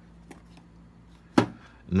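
A single sharp knock about one and a half seconds in, as the cologne's box is set down on the table, after a few faint ticks of handling.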